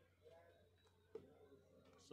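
Near silence: a faint steady hum with one faint click just after a second in.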